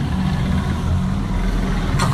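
Large touring motorcycle's engine running with a steady low rumble.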